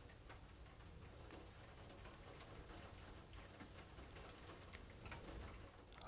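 Rain falling on a window pane, very faint: scattered, irregular light ticks of drops over a soft hiss.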